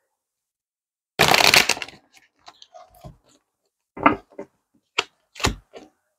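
A large tarot deck being shuffled by hand, split into parts: a quick crackling flurry of cards about a second in, then scattered soft clicks and a few sharp taps as the cards are knocked together and squared.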